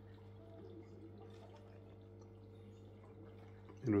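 Quiet, steady electrical hum with faint trickling and dripping of water.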